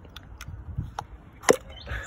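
Several sharp plastic clicks and knocks as an ignition coil pack is pulled out of a VW Golf Mk7 1.2 TSI engine, the loudest about one and a half seconds in.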